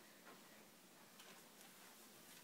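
Near silence: room tone with a few faint, irregular ticks.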